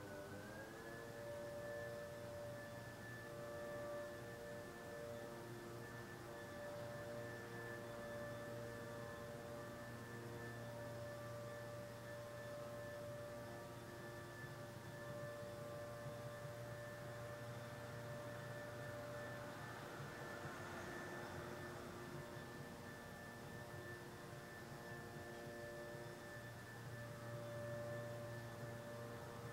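A chord of steady sustained tones at several pitches, gliding up together at first and then holding level, over a low hum.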